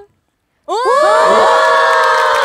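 A group of young women exclaiming a long, loud "woah!" together in surprise. The voices start abruptly about two-thirds of a second in, after a moment of dead silence, and rise in pitch before holding.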